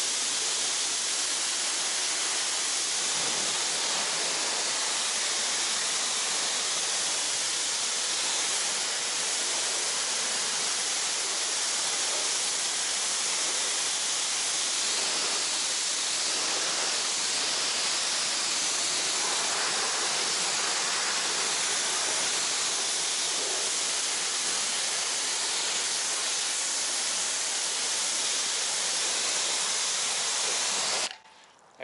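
Pressure washer's water jet, through a green-tipped nozzle, rinsing snow foam off car paintwork: a steady, loud hiss of spray striking the bodywork.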